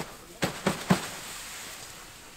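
Snow being knocked off the fabric of a rooftop tent: a few quick swishing strokes in the first second, then a faint steady hiss.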